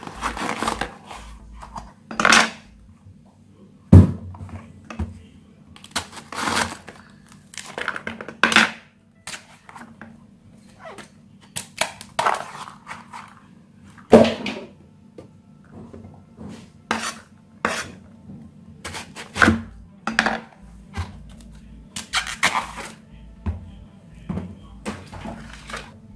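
Kitchen knife cutting a fresh banana blossom on a wooden cutting board: irregular knocks of the blade on the board mixed with rustling, crisp slicing and handling of the bracts, with one sharp knock about four seconds in.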